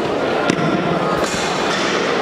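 Steady hubbub of a large indoor athletics hall, with one sharp crack about half a second in and a couple of fainter knocks after it.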